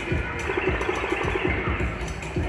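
Music with a steady beat, about two beats a second.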